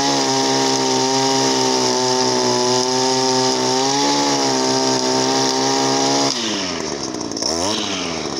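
Echo two-stroke string trimmer revving at full throttle, loud and steady, then let off about six seconds in so the engine winds down, with a short blip of the throttle near the end. With the clogged exhaust spark arrestor screen removed, the engine reaches full throttle.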